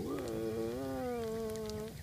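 A person's long, drawn-out 'whoaaa' exclamation, held on one steady pitch for nearly two seconds.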